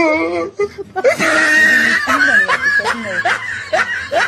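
Hearty laughter: after a brief lull, an outburst about a second in that breaks into a run of short rising bursts, about three a second.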